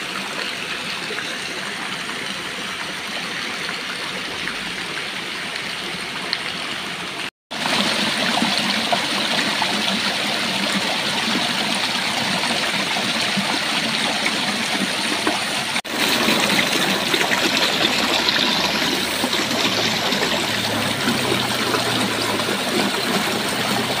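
Water from a small artificial rock cascade splashing steadily over stones into a garden pond. The sound breaks off abruptly twice, about seven and sixteen seconds in, and is louder after each break.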